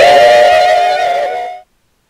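A group of young men singing together, stepping up to a final chord on "A... P..." and holding it, which cuts off suddenly about a second and a half in.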